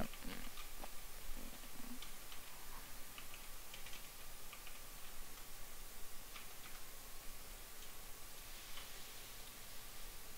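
Faint, scattered clicks of computer keyboard keys being typed on, a few at a time, over a low steady hiss.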